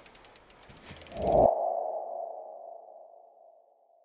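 Logo-sting sound effect: a run of quick ticks that speed up, swelling into a single ringing tone that fades away over about two seconds.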